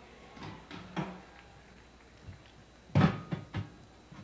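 Knocks and clanks of a metal folding chair being handled and moved: a few light knocks in the first second, then a louder cluster of clanks about three seconds in.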